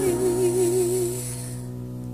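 Pop song: a singer holds a note with vibrato that stops about a second in, over a held chord that slowly fades.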